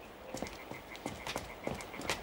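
Hard-soled footsteps climbing stone steps, a sharp step about three times a second. Behind them, from about a second in, a rapid, even, pulsing night-time trill like frogs croaking.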